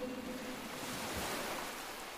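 Faint, steady rushing noise with no pitch, like soft surf or hiss.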